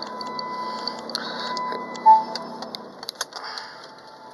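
Irregular light clicks and ticks from a handheld touchscreen device being tapped through its setup screens, with a short electronic beep about two seconds in. A faint steady tone runs underneath.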